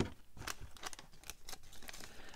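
Faint rustling and crinkling of small clear plastic parts bags being handled, heard as a scatter of light clicks.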